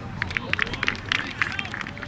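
Players clapping and slapping hands in a quick, uneven run of sharp claps as a soccer team huddle breaks, with voices mixed in.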